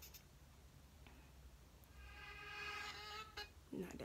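Quiet room tone with a low hum. About two seconds in, a brief snatch of a song from a music stream plays for about a second and a half, then stops as the track is skipped.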